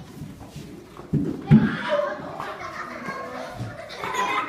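Young girls' voices chattering and playing, louder from about a second in, with the loudest burst about a second and a half in.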